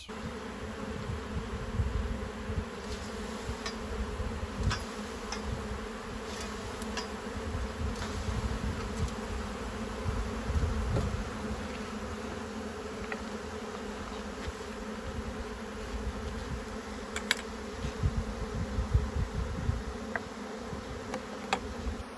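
A honeybee swarm buzzing in a dense, steady drone, the bees agitated as their cluster in the tree is disturbed with a pole.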